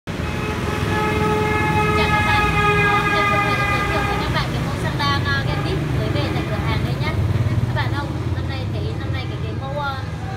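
Street traffic rumbling, with a vehicle horn held on one steady note for about four seconds near the start.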